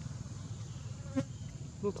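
Steady low buzz, with short squeaky calls from a baby long-tailed macaque about a second in and again near the end.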